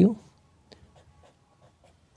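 A pen writing on a sheet of paper: a few faint, short scratching strokes as an implication arrow is drawn.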